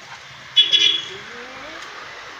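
A motor scooter passing close by sounds a short horn blast about half a second in, then its engine note rises as it moves off, over steady street noise.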